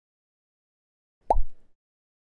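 A single short electronic pop sound effect about a second in: a quick upward blip with a low thump under it, marking an on-screen text box popping up.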